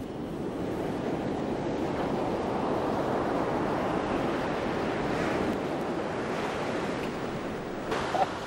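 Surf washing onto a sandy beach, a steady rushing noise, with wind on the microphone.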